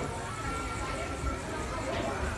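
Indistinct background chatter of visitors, with a thin steady tone for about a second in the middle.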